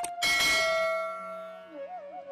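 A sharp click, then a bell rings once and fades away over about a second, over a held tone of instrumental music.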